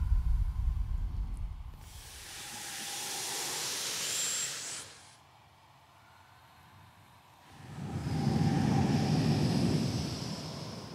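A choir making unpitched vocal noise rather than singing notes: a low rumble dies away, a loud hiss begins about two seconds in and stops sharply together after about three seconds, and after a short silence a low, rough, breathy noise swells near the end.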